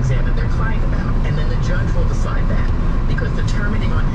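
Inside a car on a rain-wet freeway: a steady low rumble of engine and tyres, with faint talk-radio speech underneath.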